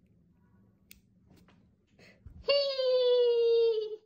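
A long, drawn-out high-pitched vocal "heee", held for about a second and a half and sliding slightly down in pitch, starting just past halfway. Before it there is near quiet, broken only by a faint click about a second in.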